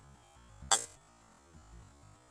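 A golf iron striking a ball off the turf: one sharp, crisp click about two-thirds of a second in, over faint background music.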